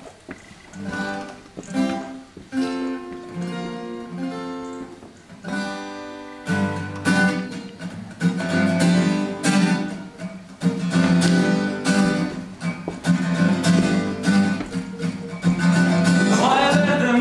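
Solo guitar playing the introduction to a song. It starts with single picked notes, then about six and a half seconds in turns to fuller strummed chords with a deeper bass, and grows louder.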